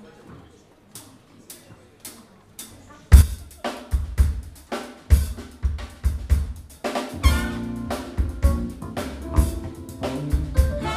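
Faint clicks about two a second count the song in, then a drum kit comes in loud about three seconds in with kick and snare hits. About seven seconds in the rest of the jazz band joins, horns included.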